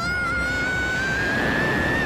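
A cartoon character's long scream, held and slowly rising in pitch, over the rushing, rumbling noise of a surge of liquid.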